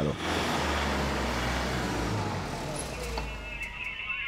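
Fire engine's diesel engine running steadily with a low hum. About three seconds in, a high wavering tone and a slowly rising tone come in over it.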